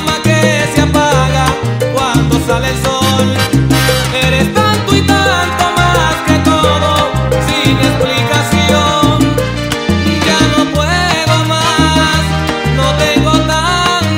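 Salsa music playing loud and steady, an instrumental stretch with a rhythmic bass line and no singing.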